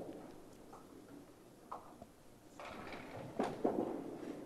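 A candlepin bowler's delivery in a bowling alley: a few faint knocks, then a rising rush of movement and a sharp knock near the end as the small ball is released onto the wooden lane, over a low alley murmur.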